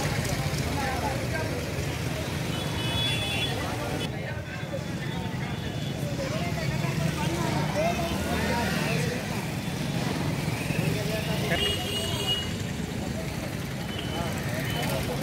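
Outdoor street-market ambience: scattered voices talking over a steady rumble of road traffic.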